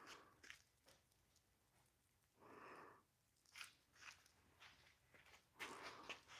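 Near silence: room tone with a few faint ticks and one soft brief rustle about two and a half seconds in.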